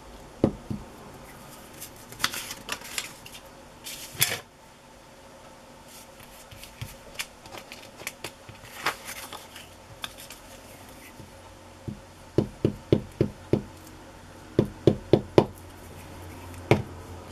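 Hands handling paper cutouts and a glue stick on a cutting mat: paper rustling with scattered light taps, then two quick runs of sharp taps near the end as pieces are pressed and set down on the table.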